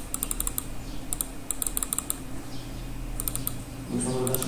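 Computer keyboard keys tapped in several quick bursts of keystrokes with short pauses between, as text is copied and edited in a document.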